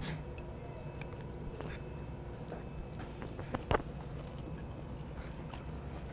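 Quiet chewing as people eat soft pancakes folded like tacos, with a few small sharp clicks.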